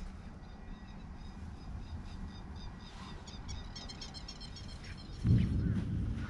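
Outdoor field ambience with a steady low rumble, and a small bird singing a quick run of high chirps from about three seconds in. A sudden loud low rumble comes near the end.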